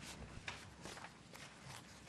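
Quiet room tone with a few faint, soft knocks spaced roughly half a second apart.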